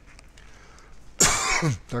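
A man clears his throat once, a short harsh burst with a falling pitch a little over a second in.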